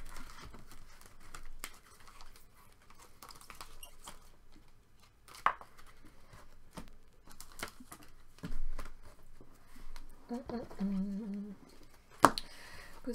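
Rigid plastic card holders clicking, tapping and sliding against each other and the tabletop as a stack of cards is sorted by hand, with scattered light clicks and one sharper click about five and a half seconds in. A brief voice sound near the end.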